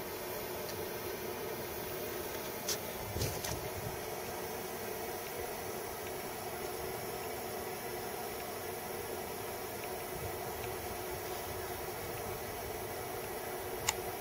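Steady hiss of pressurised gas flowing through a hose and an injection probe pushed into a rodent burrow in the soil. The gas is being delivered to suffocate the burrowing pests. A couple of faint clicks come about three seconds in.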